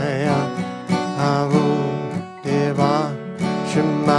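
A man singing a slow devotional chant in Aramaic, its held notes wavering and gliding, over a strummed acoustic guitar.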